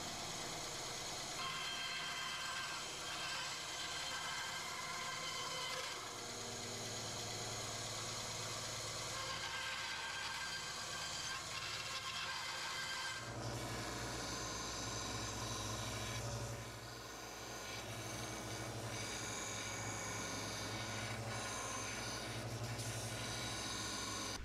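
Benchtop bandsaw running as small blocks of Lebanon cedar are fed through it and cut roughly round. About halfway through, the sound changes to a steadier, deeper machine hum.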